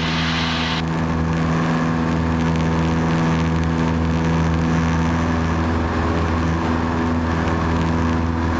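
Cessna 172P's four-cylinder Lycoming engine and propeller droning steadily in the cabin in flight; a higher hiss above the drone drops off about a second in.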